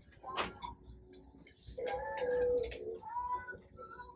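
A light clink as a lidded enamelled steel pot is set back on a metal shelf. About two seconds in, a drawn-out whining call sounds faintly in the background, followed by a shorter, higher one.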